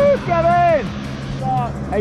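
Short shouted voice exclamations over a steady, low engine drone.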